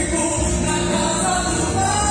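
Woman singing a gospel song through a microphone over instrumental backing, holding long notes.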